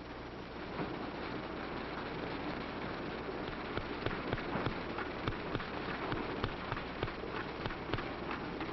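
A roomful of typewriters clattering at once: many keys striking in a dense, irregular patter that builds up within the first second.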